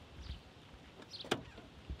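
Faint outdoor background with short high chirps every half second or so, a sharp click a little past halfway, and a soft low thump near the end.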